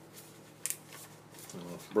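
An old cardboard-and-plastic snapper ('flipper') DVD case is being handled, with soft rustling. One sharp plastic snap comes about two-thirds of a second in as the case breaks.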